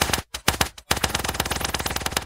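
A rapid-fire burst of sharp clicks in the music mix, like a machine-gun roll, broken by two brief gaps near the start.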